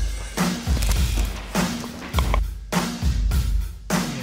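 Background music with a drum beat: kick drum strikes at a regular pulse under snare and cymbals, starting suddenly at the beginning.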